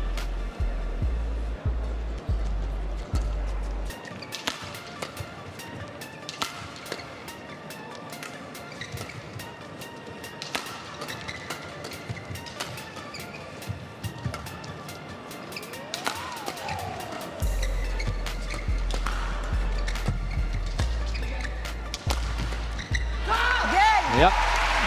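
Badminton rally: rackets striking the shuttlecock in a run of sharp cracks. Near the end the rally ends and shouting and cheering rise.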